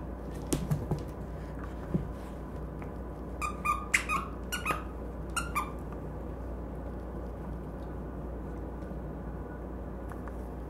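A dog chewing a plush squeaky toy: the squeaker gives a burst of about eight short, high squeaks over two seconds in the middle, after a few soft knocks in the first two seconds.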